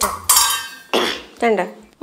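Clinks and clatter of a stainless-steel bowl and dishes as food is served, a few sharp strokes in the first second, with a short voice sound about one and a half seconds in.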